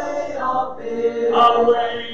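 A church congregation singing a hymn in unaccompanied harmony, with many voices holding long notes together.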